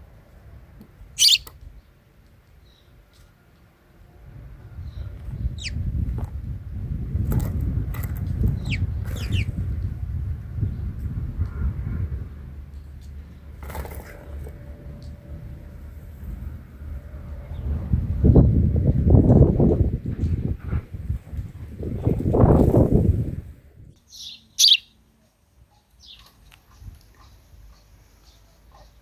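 House sparrows chirping a few short, high chirps, the loudest about a second in and near the end. Under them come two long stretches of low rushing noise.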